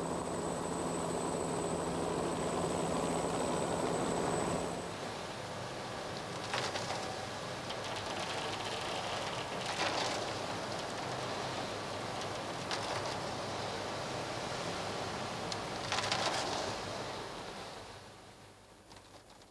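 Helicopter rotor and engine running with a steady buzzing hum for the first four and a half seconds, then the sound cuts to a quieter rushing noise broken by a few brief louder surges about three seconds apart.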